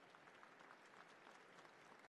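Faint audience applause, a soft patter of clapping that stays low throughout.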